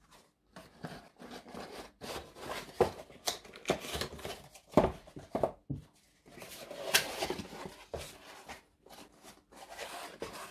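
Handling noise of small parts being packed away: a plastic parts bag rustling and a cardboard box being handled, with scattered light knocks and scrapes on the work surface.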